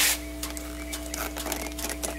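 Light clicks and rubbing from a hand pressing a car door-panel switch that brings no response, over a steady low hum.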